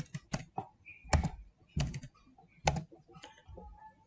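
Computer keyboard being typed on: a handful of separate, unevenly spaced keystrokes.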